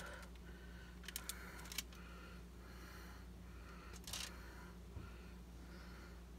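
Faint handling noises as raw bacon is wrapped around an ear of corn on a foil-lined pan: a few light clicks and a short rustle about four seconds in, over a faint steady hum.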